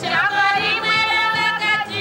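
A singing voice over music: one long held note that slides up into pitch at the start and breaks off near the end.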